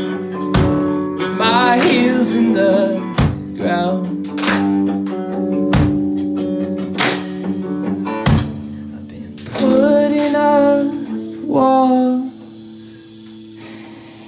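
Live rock band playing: electric guitar, bass guitar and drum kit, with a drum hit about every 1.3 seconds under sustained guitar tones. About twelve seconds in, the band drops to a quiet break.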